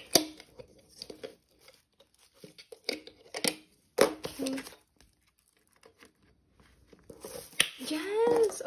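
Metal binder rings snapping open and shut with a sharp click just after the start and more clicks around three and four seconds in, between light rustling of a clear plastic sleeve as it goes onto the rings.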